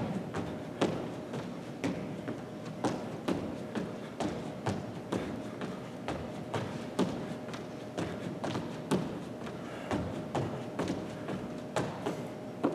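Single-leg hops landing on a hardwood gym floor: repeated thuds of the foot, about two a second in an uneven 1-2-3-4 square pattern, over a faint steady hum.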